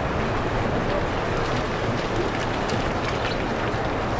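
Steady running noise of a slowly moving vehicle, a low hum of engine and tyres, with faint scattered ticks.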